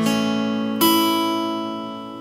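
Steel-string acoustic guitar strummed on an open A chord, fretted on the 2nd fret. The chord rings, is strummed again a little under a second in, and is left to ring out, slowly fading.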